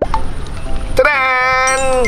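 Low rumbling wind noise on the microphone. About a second in, one long, steady, high-pitched held note, a voice-like tone that dips in pitch as it ends.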